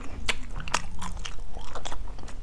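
Close-miked mouth sounds of a person chewing a spoonful of balut (fertilized duck egg), a series of short sharp clicks and smacks.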